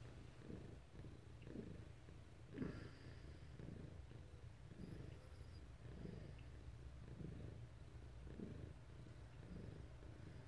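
Faint cat purring close to the microphone, swelling about once a second with each breath over a low steady rumble. One brief soft knock about two and a half seconds in.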